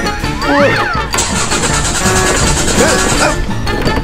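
Upbeat background music throughout. About a second in, a small motor scooter engine starts and runs with a fast, even pulse for about two seconds, then cuts out.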